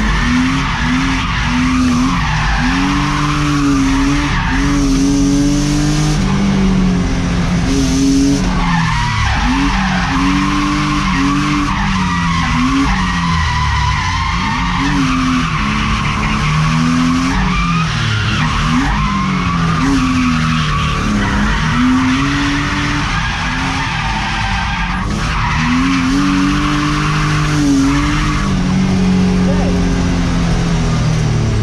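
BMW E36's M52B28 2.8-litre straight-six revving hard as the car drifts, its note climbing and dropping many times over, heard from inside the cabin. Tyres squeal throughout under the slide.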